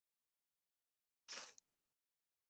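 Near silence, broken a little over a second in by one brief, faint burst of noise that fades within about half a second.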